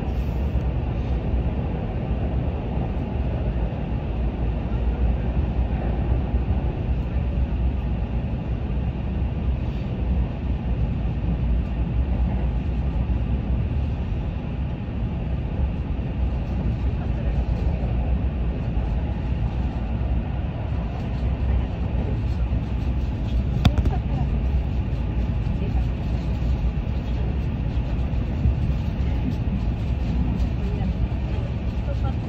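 Steady running rumble inside a moving commuter train as it travels along the track, with one short sharp click about three-quarters of the way through.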